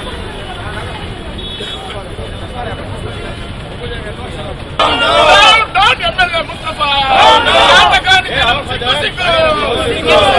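Street background of crowd murmur and traffic, then about five seconds in a group of men breaks into loud shouting of slogans, which goes on to the end.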